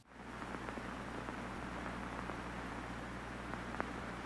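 Steady hiss over a low hum, with a few faint crackles near the end: an old-film noise effect.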